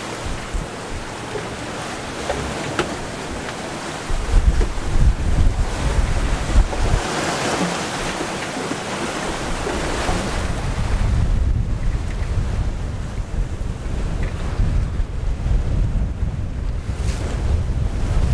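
Wind and ocean waves rushing around a sailing yacht under way in choppy open sea. From about four seconds in, gusts buffet the microphone with a heavy, uneven rumble.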